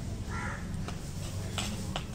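A crow caws once, briefly, about half a second in, over a steady low rumble. A few sharp clicks follow near the end.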